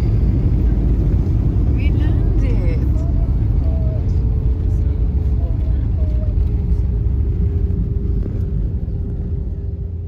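Cabin noise of an Airbus A320-family jet airliner rolling along the runway: a loud, steady low rumble with a constant whine running through it. Faint voices come through a few seconds in, and it all fades near the end.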